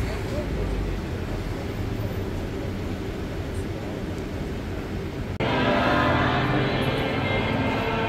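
Street noise of traffic and voices. About five seconds in it cuts off abruptly into music with many held notes.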